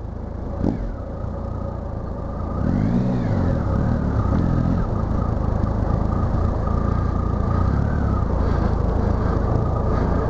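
Triumph road motorcycle's engine running as it is ridden slowly over dirt, picking up and getting louder about two and a half seconds in, then holding steady with a thin whine. A short knock comes less than a second in.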